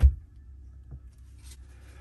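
Handling noise from a marine raw water pump being reassembled: one dull low thump, then a couple of faint light clicks as the pump with its drive gear on the shaft is handled and set down on a rubber mat.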